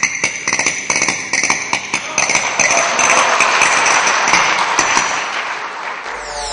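Castanets clicked in quick runs close to a microphone. From about three seconds in, a steady rush of noise rises under the clicks.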